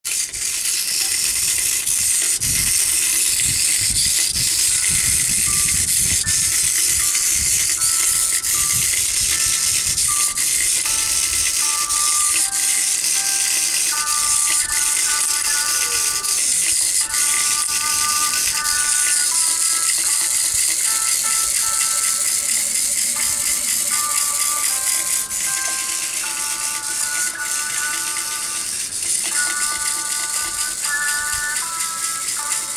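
Battery-powered toy caterpillar's small motor and plastic segments rattling steadily as it wriggles, with fine rapid clicking. From about five seconds in, a simple tune of short stepped notes plays alongside.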